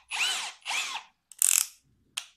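Reassembled Parkside Performance 20 V brushless cordless drill driver run in short trigger pulls to check that it works, the motor whining up and winding back down twice in the first second. About one and a half seconds in there is a shorter, louder rattling burst.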